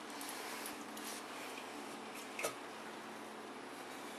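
Faint room noise with a single light click about two and a half seconds in.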